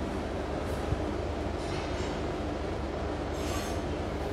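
Steady low background hum with a single soft click about a second in and two brief rustles later on.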